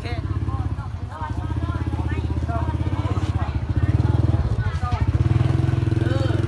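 A small engine running steadily at a low, even speed with a fast, regular pulse, over faint voices.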